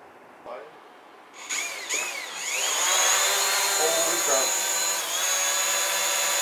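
DJI Mavic Pro quadcopter's motors and propellers spinning up about a second and a half in, the whine swinging up and down in pitch as it lifts off, then settling into a steady, loud high-pitched buzz as it hovers.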